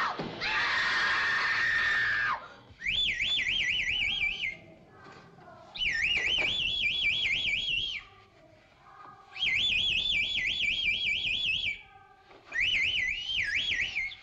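A high whistle trilling in four warbling bursts of about two seconds each, with short pauses between them, after a brief rushing noise at the start.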